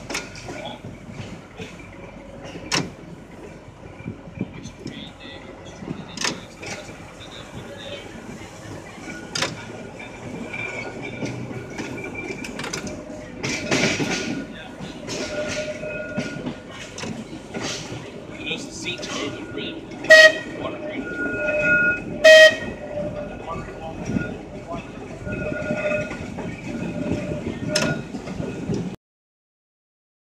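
1934 English Electric Blackpool open-air tram running along the track: a steady rumble with frequent sharp clicks from the wheels. A faint whining tone comes and goes as it runs, and two short, loud pitched blasts sound about two seconds apart, some twenty seconds in.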